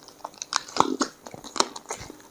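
Close-up chewing and biting: a person eating curry-coated chicken by hand, with irregular mouth clicks and smacks.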